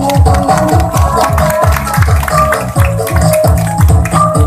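Electronic music with a steady bass beat, about three beats a second, under a held melody line.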